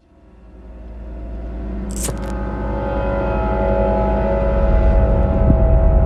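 A low rumbling drone with a few steady tones over it fades up from silence, growing louder over about five seconds, with a short burst of hiss about two seconds in.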